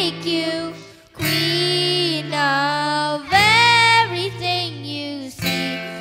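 Live acoustic band music: a sung melody with long held notes over acoustic guitar, with a child's voice singing along. There is a brief gap about a second in.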